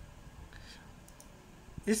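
A single click of a laptop pointer button near the end, over quiet room tone: the click that opens Control Panel from the search results.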